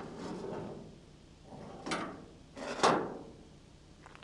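The lid of a commercial dumpster being lifted and swung open: two noisy drags of the lid, then a sharper knock, the loudest sound, about three seconds in.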